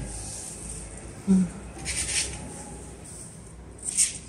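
Light rustling of artificial hydrangea flowers as they are handled and set onto the floral foam of a table runner, with a brief louder rustle about two seconds in and a short sharp one at the end. A short hummed "mm" comes just after a second in.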